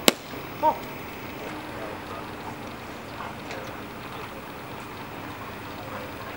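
A single sharp pop of a baseball smacking into a leather glove, followed about half a second later by a short shouted call of "One!", typical of a ball-and-strike call.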